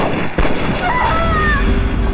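Pistol shots: a sharp crack at the start and a second one about half a second in, followed by a heavy low rumble.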